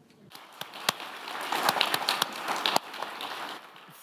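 Audience applauding. The clapping starts a moment in, builds over the first second or so, and dies away near the end.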